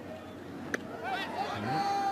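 One sharp pop of a baseball smacking into the catcher's leather mitt on a strikeout pitch, followed by voices calling out from the field and stands.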